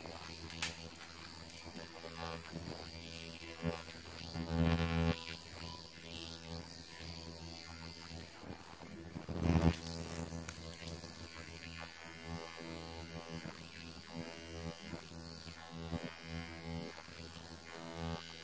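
Handheld ultrasonic skin spatula (facial scrubber) buzzing steadily while switched on, used to slough dead skin from the face, with two louder swells about four and nine seconds in.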